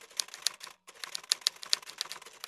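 Typing sound effect: a quick run of keystroke clicks, several a second, with a brief break just under a second in.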